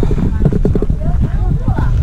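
A person's voice talking over a steady low rumble.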